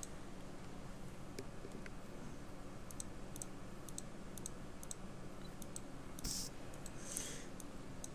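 Faint, scattered clicks from a computer mouse and keyboard being worked, a dozen or so at irregular intervals, over a low steady hum. A brief, slightly louder rustle comes about six seconds in.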